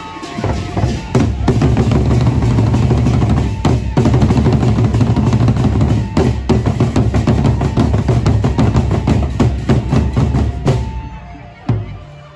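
Gendang beleq ensemble: large Sasak double-headed barrel drums beaten in a fast, dense rhythm, which stops near the end.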